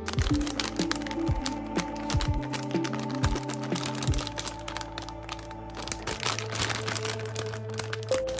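Light background music of long held notes, with a plastic lollipop bag crinkling and crackling as it is handled and turned over; the crackles are thickest near the end.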